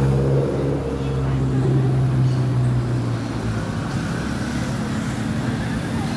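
A motor vehicle's engine running close by, a steady low hum that eases off after about three seconds.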